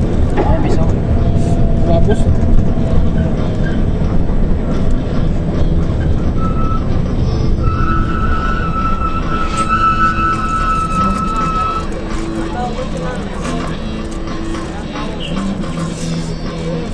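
Rumble of a moving city bus heard from inside the cabin: engine and road noise. A steady high-pitched whine runs for about five seconds in the middle.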